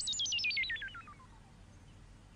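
Synthesizer sound effect marking a magic transformation: a warbling electronic tone of quick repeated upward chirps, about a dozen a second, that falls steeply in pitch as a whole and fades out about a second in.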